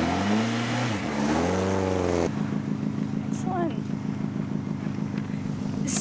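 A rally car's engine revving as the car pulls away: the pitch rises, drops once at a gear change about a second in, then climbs again. About two seconds in it breaks off, and another rally car's engine idles steadily.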